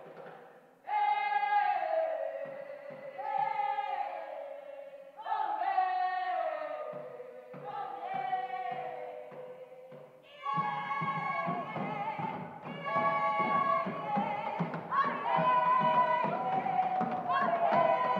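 A group of singers performing an African song live. At first separate sung phrases come with short pauses between them. About ten seconds in, a fuller group of voices comes in, singing in harmony over a steady percussive beat.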